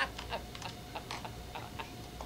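Eating ice cream from a cup with a spoon: quiet, irregular clicks and smacks of spoon and mouth, a few a second.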